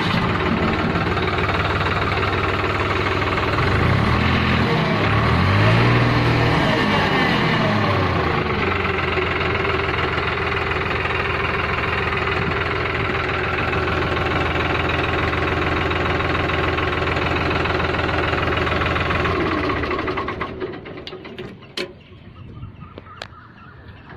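New Holland 3630 TX Super's 50 hp three-cylinder diesel engine with inline injection pump, running steadily as the tractor drives along. Its pitch rises and falls for a few seconds about four seconds in, and the sound drops away near the end.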